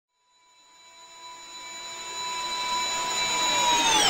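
Logo-intro sound effect: a swelling whoosh with a steady high whine that starts about half a second in and builds louder throughout, the whine beginning to sweep downward near the end.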